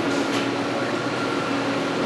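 Steady room noise: a constant even hiss with a faint hum and no distinct event.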